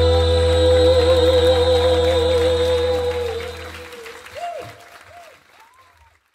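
The closing held note of a sung anthem: a singer sustains one long note with vibrato over a steady bass from the backing track, which stops about four seconds in. Faint applause and a few short calls follow as the sound fades away and cuts off near the end.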